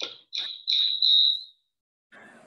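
A high-pitched electronic tone in four short pulses, each louder than the last, ending abruptly about a second and a half in.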